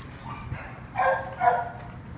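A dog whining twice in short high-pitched cries, about a second in and again half a second later.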